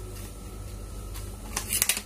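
Low steady hum, then, about a second and a half in, a quick run of sharp crinkly clicks as a plastic sachet is handled and opened.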